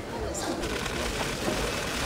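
Press photographers' camera shutters clicking rapidly in overlapping bursts, with indistinct voices chattering underneath.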